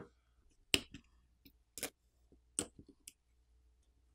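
About four sharp, brief clicks spread out over a few seconds, as snap-fit flex-cable and coaxial connectors are popped off a smartphone's sub-board with a metal pry tool.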